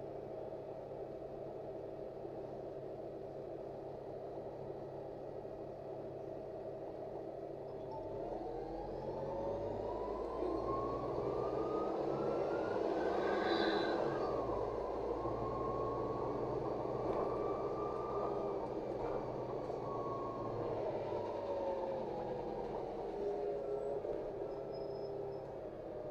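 Inside a LiAZ 5292.67 city bus: the engine idles steadily, then the bus pulls away about eight seconds in. The drivetrain whine rises in pitch and grows louder as it speeds up, then falls and holds level while it cruises. It slopes down as the bus slows near the end.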